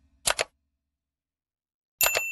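Mouse-click sound effect of a subscribe-button animation: a quick double click about a quarter second in.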